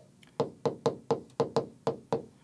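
Stylus tapping and clicking against the glass of a touchscreen display while handwriting a word: a quick series of about seven short taps, roughly four a second.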